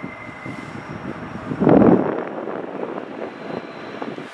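Wind buffeting the microphone, with one short loud gust just under two seconds in, over the faint sound of a CSX intermodal freight train still far off down the track.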